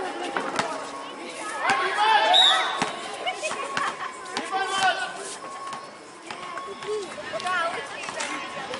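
Young players and onlookers shouting and calling out to each other during a basketball game, loudest about two seconds in, with a few sharp thuds of the basketball hitting the court.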